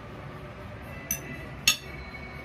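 Metal fork clinking twice against a ceramic dinner plate, the second clink louder, each with a short ring.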